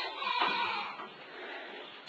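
Faint background farm-animal noise in a shed, with a few weak calls in the first second.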